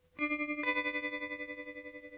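Credits music: a guitar with a wavering chorus-like effect strikes a chord about a fifth of a second in, adds higher notes about half a second later, and lets them ring and slowly fade.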